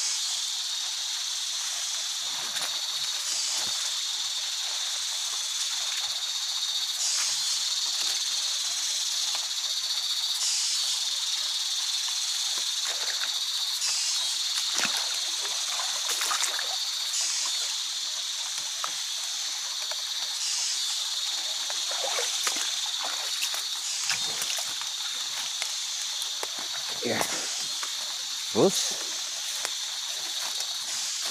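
A steady high-pitched insect chorus in tropical rainforest at dusk, swelling in a regular pulse about every three and a half seconds, over scattered footsteps and rustling through undergrowth.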